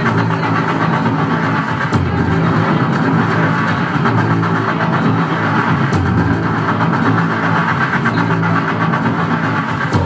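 Loud live music: a dense, steady drone of held low tones under a noisy, distorted wash, with little change in level.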